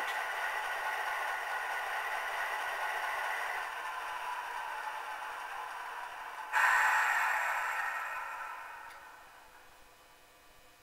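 Soundtraxx Tsunami decoder playing its dual EMD 567 prime mover sound through the HO-scale E8's two tiny speakers, idling thin and without bass. About six and a half seconds in, a louder rushing sound cuts in suddenly, and then everything fades away over about three seconds.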